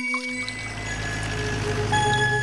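Film background score: sustained synthesizer chord tones under a swelling hiss that builds and thins out near the end, over a low rumble.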